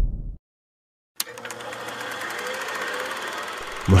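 A low rumble fades out, then a moment of dead silence. A click follows about a second in, and a steady mechanical running noise with a faint hum and fine rapid ticking begins and carries on.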